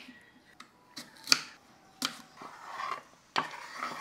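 Kitchen knife cutting through tomato and knocking on a wooden chopping board: about five sharp separate knocks at uneven intervals, with softer scraping of the blade on the board between them.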